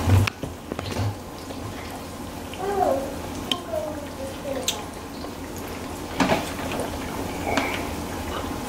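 Chicken strips frying in hot oil in a skillet, a steady sizzle, with a few sharp clicks of metal tongs and utensils against the pan.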